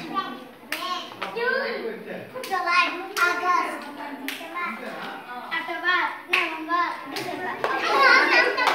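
Young children's voices chanting together while a clap is passed palm to palm around a circle, with sharp hand slaps landing about once a second.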